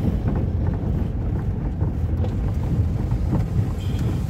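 Steady low rumble of a car's tyres on a dirt road, heard from inside the moving car's cabin.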